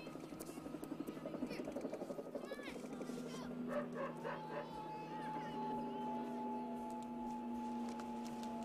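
Outdoor background ambience with a few short distant dog barks in the first half, then a steady held tone, likely from the film score, from about halfway on.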